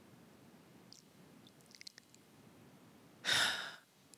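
A woman sighs into a close microphone: one breathy exhale about three seconds in, lasting about half a second. Before it there is near quiet with a couple of faint mouth clicks.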